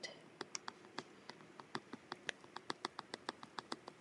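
Chunky glitter being poured from a bag into a clear ornament: a faint, rapid, irregular patter of small ticks, about nine a second, as the flakes hit the inside of the ornament.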